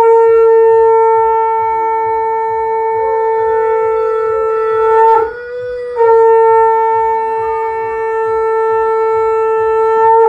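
Conch shell (shankha) blown in long, loud, steady blasts: one held about five seconds, a short break, then a second held about four seconds.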